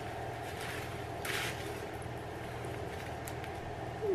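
Fabric rustling as a knit crop top is handled and unfolded, with one brief louder rustle about a second in, over a steady low background hum.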